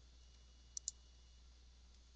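Near silence with two faint computer mouse clicks in quick succession a little under a second in.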